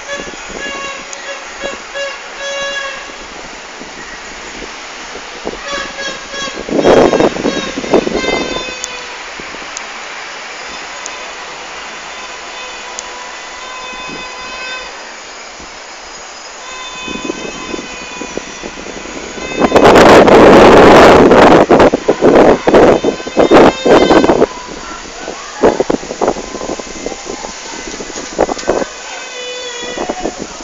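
Horns tooting in short repeated blasts across the city, with a loud noisy burst about seven seconds in and a longer, louder stretch of noisy bursts from about twenty to twenty-four seconds.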